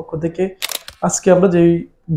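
A man speaking, with a brief hiss-like burst about halfway through.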